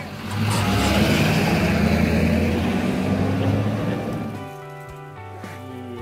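A pickup truck pulling away and driving off, engine and tyres loud at first, then fading out over about four seconds. Background music, plucked guitar, comes in near the end.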